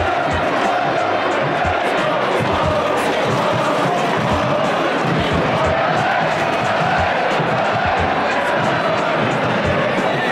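A large soccer stadium crowd chanting and singing together, loud and steady, with irregular low thumps underneath.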